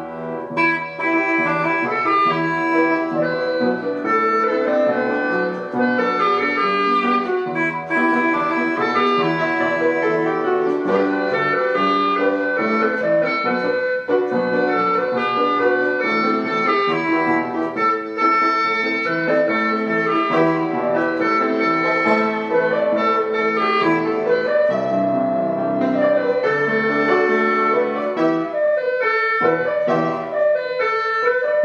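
Bawu, a Chinese free-reed wind instrument, playing a melody over piano accompaniment.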